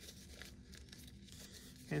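Faint crinkling of a paper towel as it is folded and creased tightly by hand into a small wad.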